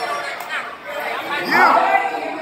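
Several people talking at once, overlapping chatter with one louder call about one and a half seconds in.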